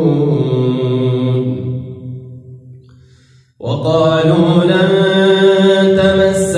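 A man reciting the Quran in melodic tajweed style: a long held note at the close of a phrase trails off over about two seconds. After a short breath pause about three and a half seconds in, he opens the next phrase on a strong, sustained tone.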